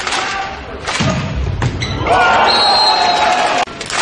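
Volleyball rally in an indoor arena: sharp ball contacts in the first second, the heaviest a low thump about a second in, followed from about two seconds in by loud shouting and cheering that cuts off abruptly shortly before the end.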